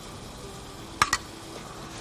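A metal spoon clinks twice in quick succession against a small saucepan of cauliflower purée about a second in, over a faint steady hiss.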